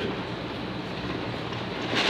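Steady background noise with a low hum and no speech.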